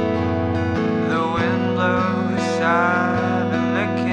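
Freshly restrung acoustic guitar strummed through an improvised chord progression, with a voice singing over it in places.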